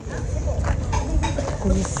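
Outdoor market ambience: a steady low rumble of wind on the microphone, with voices close by and a few light clicks and knocks.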